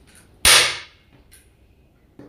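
A xiangqi (Chinese chess) piece slapped down hard on the board: one sharp, loud clack about half a second in, then a faint click a little later.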